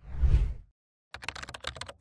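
A short whoosh sound effect, then, just over a second in, a quick run of computer keyboard key clicks as text is typed.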